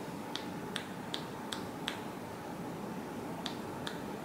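Sharp finger clicks made by a masseur's fingers right at the ear during an ear massage. There is a quick regular run of five, about two and a half a second, a pause, then two more near the end.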